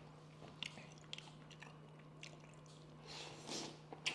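Faint chewing of braised soft-shell turtle eaten by hand: small wet mouth clicks here and there as the sticky, gelatinous meat and skirt are worked, with a brief louder smack or suck a little after three seconds in.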